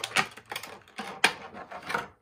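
Clear plastic blister tray crackling and clicking as it is handled and pried open: an irregular string of sharp clicks, loudest about a quarter second in and again just past a second.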